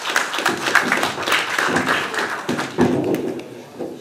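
Applause: a room full of hand claps that thins out near the end, with a thump about three seconds in.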